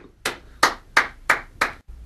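Five sharp hand claps in a row, about three a second, coming straight after a sung mawal phrase ends, as clapped appreciation.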